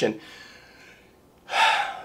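A man's quick, audible intake of breath, under half a second long, about one and a half seconds in, just before he speaks again.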